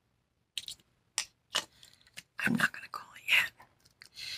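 A woman speaking quietly, partly in a whisper, in short broken phrases, the voice fuller and louder in the second half.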